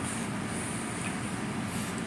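Steady, even background noise with no distinct events, like a fan or machinery running.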